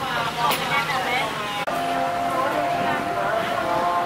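Background chatter of voices at a street-food stall; after an abrupt cut about a second and a half in, a steady droning tone runs under the voices.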